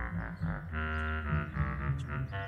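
Background music: held chords over a low bass, changing every half second or so.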